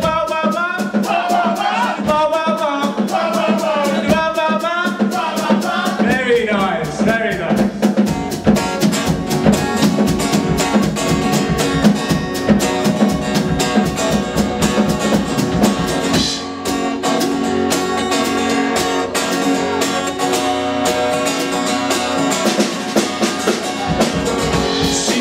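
Acoustic guitar strummed with a drum kit, playing a song's instrumental introduction, which comes in about eight seconds in. Before it, a voice with a wavering pitch is heard over the music.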